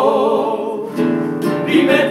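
A male vocal quartet sings in harmony over a strummed nylon-string Spanish guitar. A held note with vibrato fades about a second in, the guitar strums on alone briefly, and the voices come back in near the end.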